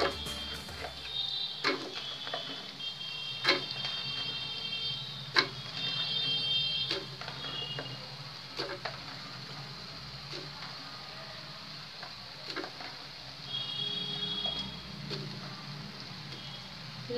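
Raw potato cubes dropped by hand into a frying pan of cauliflower and peas, giving a series of knocks and clatters every second or two, over soft background music.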